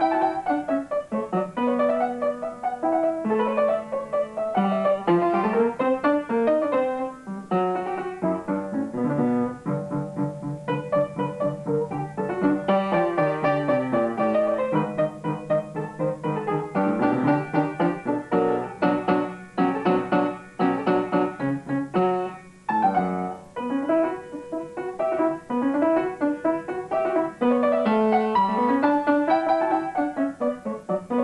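Solo upright piano playing a classical student piece in quick running notes and broken chords, the same rising figure returning near the end.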